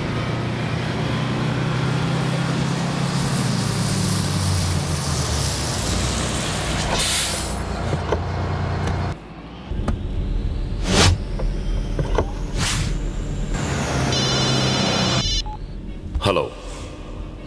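Volvo coach bus engine running as the bus approaches and pulls up, with a hiss of air brakes about seven seconds in. After about nine seconds the engine sound cuts off and a few sharp knocks follow, then a brief high beeping near the end.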